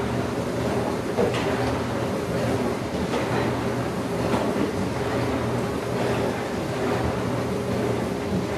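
Steady hum and whoosh of an electric fan running in the room, with a few faint soft taps.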